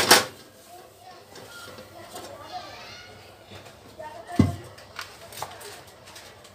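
Kitchen handling noises: a loud clatter right at the start and a single sharp knock about four and a half seconds in, with a few light clicks after it, over faint distant voices.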